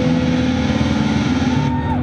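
Live rock band playing loud, distorted electric guitars with drums. Near the end the cymbal wash stops suddenly and held guitar notes ring on.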